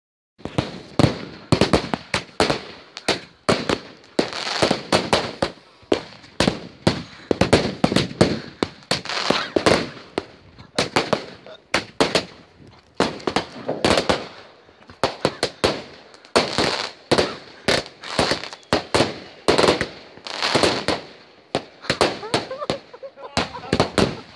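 Fireworks going off in quick succession: a dense run of sharp bangs and crackles, several a second, throughout.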